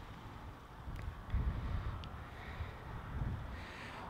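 Quiet low rumble with a few faint clicks.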